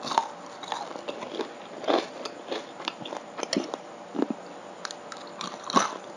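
Close chewing of crunchy breaded fried pork: a run of irregular crisp crunches, a few a second, with a sharper crunch near the end.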